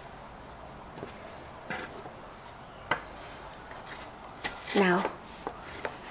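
Quiet handling of fabric over a wooden embroidery hoop: soft rubbing as hands smooth the fabric flat, with a few faint clicks and taps, the sharpest about two and three seconds in.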